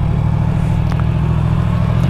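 Yamaha MT-10's crossplane inline-four engine running steadily as the motorcycle rolls along, with a rush of wind noise over it.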